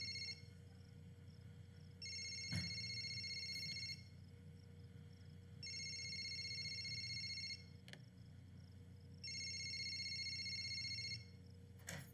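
Mobile phone ringing: a high electronic ring in bursts of about two seconds, repeating about every three and a half seconds, four times in all. A click follows just before the end.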